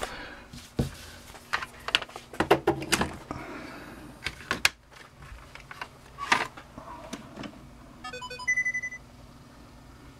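Clicks and knocks of handling, then about eight seconds in a short electronic chime from the Samsung LN19A450C1D LCD TV's speakers: a few quick stepped notes and a held tone of about half a second. It is the set powering up, a sign that the repaired power supply is working.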